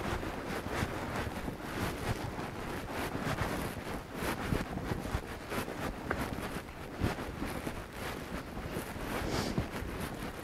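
Wind buffeting the camera microphone, a steady rumbling noise, with a few faint knocks.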